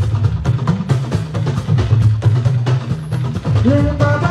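Live fuji band playing a percussion-driven passage: dense, rapid drum strikes over a bass-guitar line, with the lead vocal coming back in near the end.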